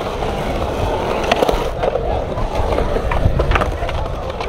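Skateboard wheels rolling over the concrete of a skate-park bowl, a steady rumble broken by a few sharp clacks of boards, one about a second and a half in and two close together near the end.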